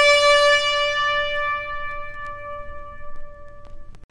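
A trumpet holding one long high note that slowly fades and breaks off abruptly just before the end.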